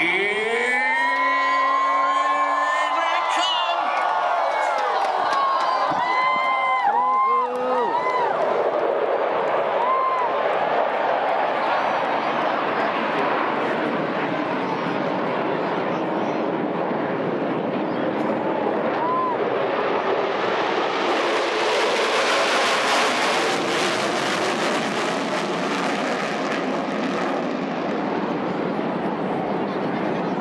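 Crowd whooping and cheering, then the roar of a formation of F-16 and F-15SG fighter jets building up overhead and peaking about two-thirds of the way through before easing off.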